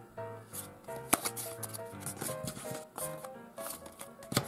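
Soft background music with playing cards being handled and laid down on a table: light clicks and slides, the sharpest click about a second in.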